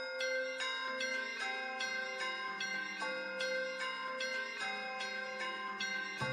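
Music intro of ringing bell tones, struck about three times a second in a repeating pattern, each note ringing on over the next.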